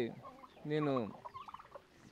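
Soft calls of domestic turkeys and chickens in the background, with one short spoken word just under a second in.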